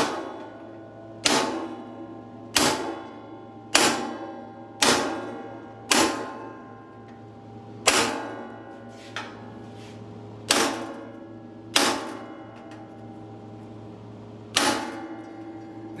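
Hammer blows on a rounded chisel pressing a flute into a clamped sheet-metal floor pan: about ten sharp clangs, each ringing on in the sheet. They come roughly a second apart at first, then with longer gaps.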